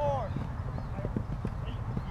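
A short shout from a player on a grass football field at the start, then a few soft short taps, over a steady low rumble.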